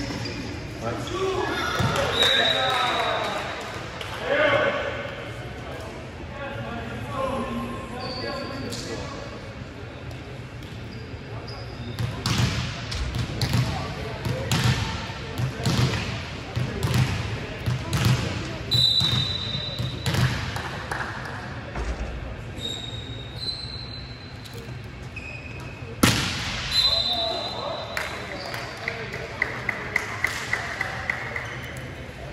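Volleyball play in a large, echoing sports hall: the ball struck and bouncing on the court, short high squeaks of shoes on the floor, and players' voices and shouts. A quick run of taps comes near the end.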